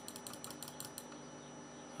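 Computer mouse button clicked repeatedly, about eight quick clicks in the first second and then stopping, as he clicks at a computer that is stuck.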